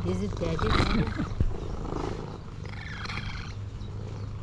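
Orange tabby cat meowing while being petted, two calls that bend in pitch, one about half a second to a second in and another around three seconds in.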